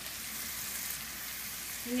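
Halved Brussels sprouts sizzling in butter with shallots and garlic in a stainless steel sauté pan: a steady, even hiss. The sprouts have just come wet from blanching water into the hot fat.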